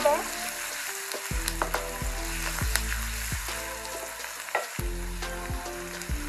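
Sliced onions and green chillies sizzling as they fry in oil in a metal karai, stirred with a wooden spoon. The spoon knocks and scrapes against the pan several times.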